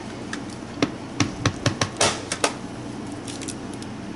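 Letter stamps dabbed repeatedly onto an archival ink pad: a quick run of light taps and clicks over the first two and a half seconds, then a few faint ticks.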